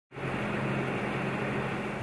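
Steady mechanical hum: a low two-tone drone over an even hiss, fading in at the very start and holding level throughout.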